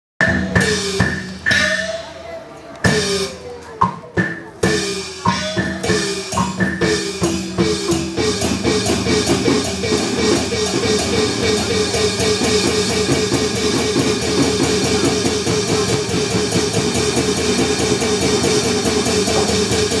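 Percussion accompaniment for a Taiwanese opera battle scene, with drums and gongs. It starts as separate accented strikes and settles about eight seconds in into a fast, even beat.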